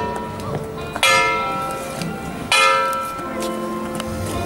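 Church bell tolling the hour with slow, evenly spaced strikes about a second and a half apart, each one ringing on. Two strikes fall in this stretch, the first about a second in.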